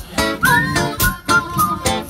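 Harmonica played live over a steady rhythmic accompaniment of about four beats a second, with a short swooping note about half a second in.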